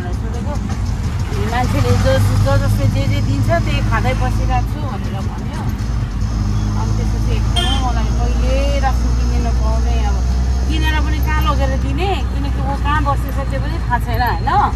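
Auto-rickshaw engine running with a steady low drone, heard from inside the open passenger cabin while riding, with people talking over it.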